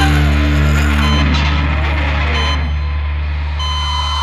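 Stoner rock music: a low, distorted chord is held and left to ring on, and its higher parts thin out toward the end.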